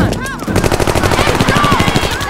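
Rapid automatic gunfire: a fast, even run of shots starting about half a second in and carrying on.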